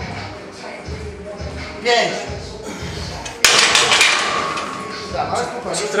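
A loaded steel barbell racked onto the power-rack hooks at the end of a set of overhead presses: one sharp metal clank about three and a half seconds in, with a ringing tone that fades over a second or so.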